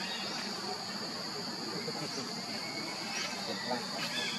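Steady outdoor ambience: a continuous high-pitched insect drone with faint, indistinct voices underneath.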